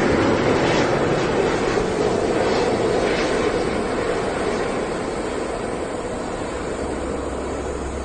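Airbus A380 airliner's four turbofan engines on landing approach, a steady jet noise that slowly fades as the aircraft passes and moves away.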